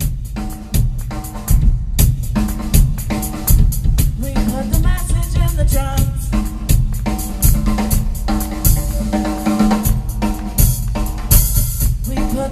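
Pearl drum kit played live in a fast, dense drum solo, with kick drum, snare and rim hits. Cymbals wash in briefly around the ninth second and again near the end.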